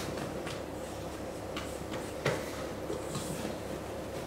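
A spatula folding icing sugar into stiff meringue in a stainless steel mixing bowl: soft scraping with a few light knocks against the bowl, the clearest a little past halfway.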